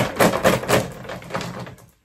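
Handling noise right on the microphone: a quick run of rustles and knocks as something is pressed against and moved across the camera, loudest at first and dying away near the end.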